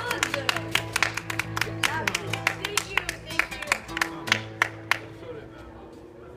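A few people clapping by hand, about four claps a second, dying away over about five seconds, while an acoustic guitar's last notes ring under it.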